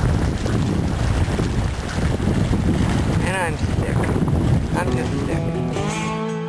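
Wind buffeting the camera microphone, a loud, rough rumble. A brief rising-and-falling call cuts through about three seconds in, and guitar music fades in near the end.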